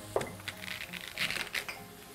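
Chef's knife cutting into a fresh fennel bulb on a wooden cutting board: a sharp click near the start, then a cluster of crisp crunching clicks a little past halfway.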